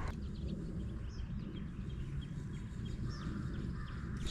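Quiet outdoor ambience with a few faint, short bird chirps scattered over a low, steady rumble.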